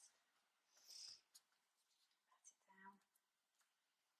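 Near silence: a faint brief rub of paper about a second in as a protective sheet is pressed and smoothed by gloved hands over a spray-mounted collage, with a few soft paper clicks and a brief soft murmur of a voice near the end.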